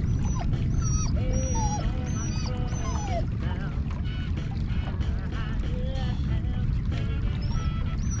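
Animal calls: many short squealing, wavering calls at several pitches, some overlapping, over a steady low rumble.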